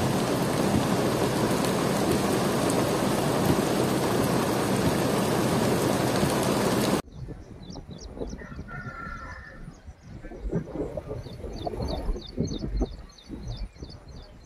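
Muddy floodwater rushing in a torrent makes a loud, steady roar of noise, which cuts off suddenly about halfway through. After it, the sound is much quieter: a bird calls once and small birds chirp over and over, while gusts of wind buffet the microphone.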